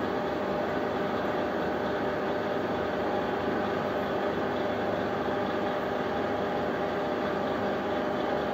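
Wilson metalworking lathe running steadily, its motor and gear train making an even mechanical hum with a faint gear whine. No tool is cutting.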